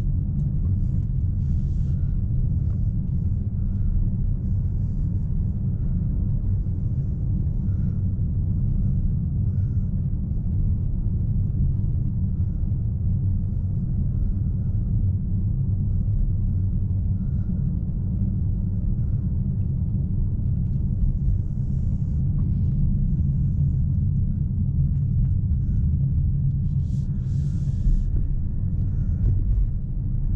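Steady low rumble inside the cabin of a 2020 Ford Explorer plug-in hybrid driving at an even speed of about 50 km/h: road and drivetrain noise.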